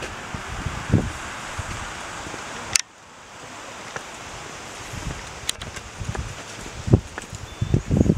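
Rustling and a steady hiss as someone walks along a hedge-lined path, with a few dull low footstep thumps. The hiss cuts off abruptly with a sharp click about three seconds in.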